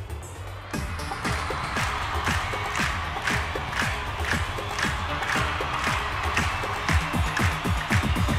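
Instrumental pop music that starts about a second in and settles into a steady drum beat with a moving bass line, without vocals.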